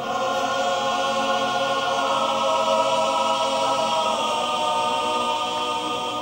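Sardinian male choir singing a cappella in close harmony, holding long chords that move to a new chord about four seconds in.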